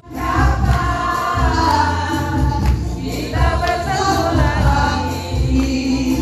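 A song with several voices singing over backing music with a steady bass beat.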